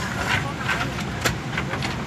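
Airliner cabin background during boarding: a steady ventilation hum with other passengers' voices, and a single sharp click a little past halfway.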